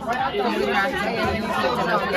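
Several voices talking over one another in a room, with no other sound standing out.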